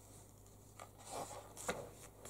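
Glossy pages of a large art book turned by hand: a soft paper rustle and slide, with a short slap of the page settling near the end.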